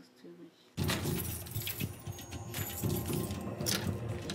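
A bunch of metal keys on a chain jangling, and a key clicking as it is worked in the lock of a stainless steel cabinet door. It starts suddenly under a second in.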